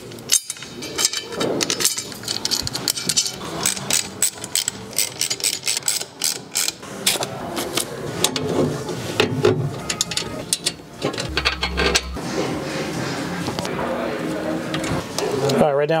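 Repeated small clicks and clatters of metal hardware and brackets being handled and fitted while an ARB dual air compressor is bolted to its mounting bracket, with a brief low thud near the end.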